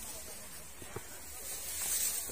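Steady high hiss and rustling of tall grass and ferns as a hiker scrambles up through them, with a faint click about a second in and the rustle growing louder near the end.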